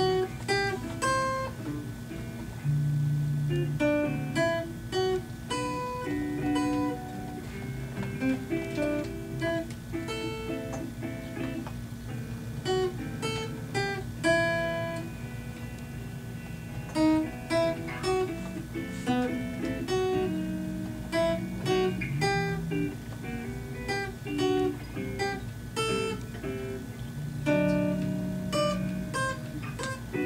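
An electric guitar and a small acoustic guitar playing together: quick picked single notes over steadily strummed chords.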